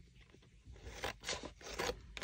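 Scissors cutting through a paper collage board of glued-on stamps: a quick series of crisp snips in the second half, after a near-quiet first second.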